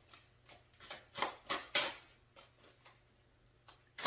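A deck of tarot cards being shuffled by hand: a quick run of soft card flicks and slaps in the first two seconds, then quieter handling with one more flick near the end.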